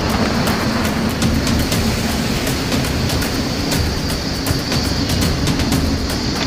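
A ship's engine drones steadily under a loud, constant rush of wind and sea in heavy weather, heard from inside the wheelhouse, with many small ticks running through it.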